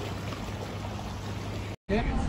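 Steady outdoor wind and sea noise at a rocky shoreline, an even rushing with a low rumble, cutting off suddenly near the end.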